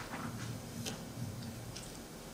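Quiet hum with a few faint, soft clicks, about three in two seconds.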